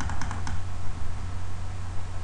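A few quick clicks from a computer's keys or mouse button in the first half-second, over a steady low hum.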